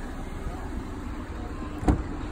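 Steady low hum with a single sharp knock near the end, from the driver's door of a Nissan Versa being opened.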